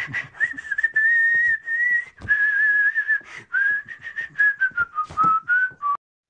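Someone whistling a tune as one clear, wavering note that drifts lower toward the end, over a run of light, irregular clicks and taps.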